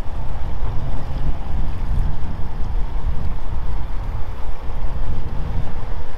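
Outboard motor of a small workboat running steadily on the river, a faint even drone, under loud gusting wind rumble on the microphone.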